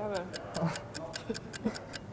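Fast, even ticking of a clock sound effect, about six ticks a second, over faint short voice sounds.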